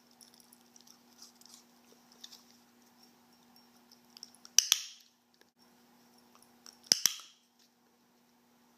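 A dog-training clicker pressed twice, a couple of seconds apart, each press a sharp double click marking the Italian greyhound puppy taking the plastic pill bottle in its mouth. Fainter small ticks come from the dog's mouth on the bottle, and a low steady hum runs underneath.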